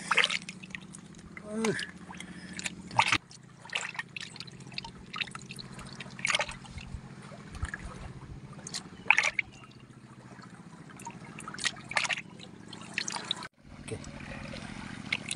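Water in a plastic basin of sea worms being stirred by hand and with a stick: small splashes and drips at irregular intervals.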